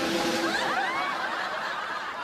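Studio audience laughing, a burst of many voices at once that thins out toward the end.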